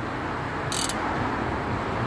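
Steady low background hum of a garage bay, with one short hiss about three quarters of a second in.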